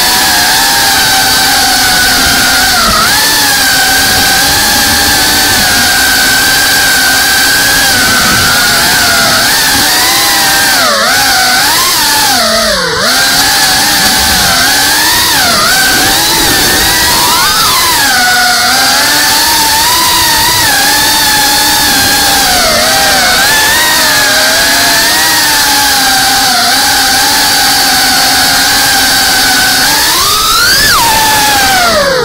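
FPV racing quadcopter's brushless motors and propellers whining, the pitch rising and falling with the throttle, with one deeper dip about twelve seconds in.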